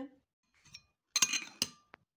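A metal spoon clinking against a dish: a quick run of four or five sharp clinks with a short bright ring, about a second in, and one faint tap near the end.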